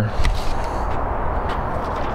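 Supercharged 258-cubic-inch Ardun-headed Ford V8 idling steadily.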